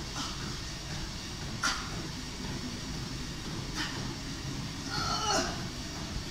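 A woman straining under effort as her arms tire holding dumbbells out at shoulder level: two sharp breaths about two seconds apart, then a short high-pitched strained cry about five seconds in.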